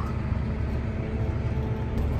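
Steady low engine rumble heard from inside a farm vehicle's cab as it drives across a field.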